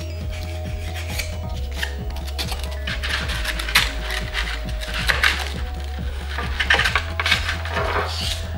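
Foam board rubbed and scraped against a wooden tabletop to lightly crush its edge, then foam pieces rubbing together as they are pushed into place, in a series of short, irregular scratchy strokes.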